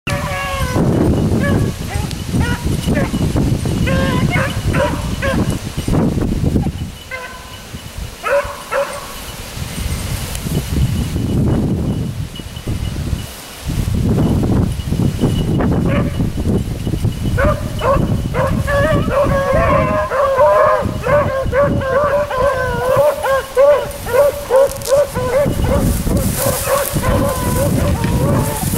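Beagles baying as they run a track, with scattered cries early on and several voices overlapping in a continuous chorus from about two-thirds of the way in. Wind buffets the microphone throughout.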